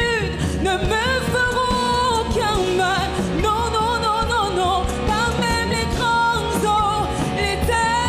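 A woman's voice singing a French gospel worship song, with long held and sliding notes, over continuous band accompaniment.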